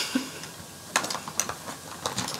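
Plastic makeup containers and compacts clicking and clacking against each other as they are handled and sorted by hand: a few sharp clicks, the loudest about a second in and a quick cluster soon after.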